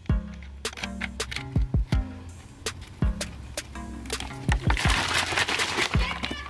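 Background music with a beat and deep bass hits; a hiss builds over the last second or so.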